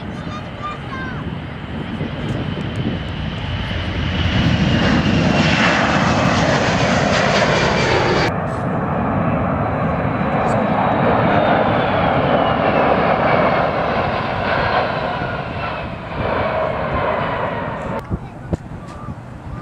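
Four turbofan engines of a C-17 Globemaster III at take-off thrust. The jet noise builds over the first few seconds, with a high whine that falls in pitch as the aircraft passes. It breaks off abruptly about eight seconds in and resumes with the same jet noise and a slowly falling whine, easing slightly near the end.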